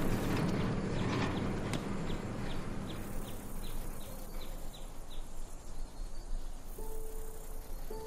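A car engine's low hum fades away over the first few seconds while a run of short, high, falling chirps sounds about three times a second; near the end a held note of music comes in.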